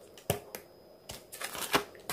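Laminated paper envelope and printed sheets being handled: one sharp click a quarter second in, then several lighter clicks and rustles in the second half.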